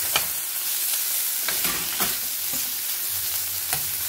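Beef strips sizzling hard as they sear in a smoking-hot, lightly oiled frying pan: high heat, frying rather than stewing. A metal spoon stirs them, scraping and clinking against the pan a few times.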